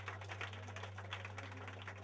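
Steady low hum from the band's amplifiers in a pause between songs, with scattered small clicks and taps over it.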